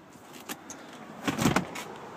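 A few clicks and a brief clatter as a minivan's stow-and-go seat latches and handles are worked by hand.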